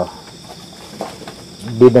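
Crickets chirping steadily as a faint, high, continuous trill in a pause between a man's words.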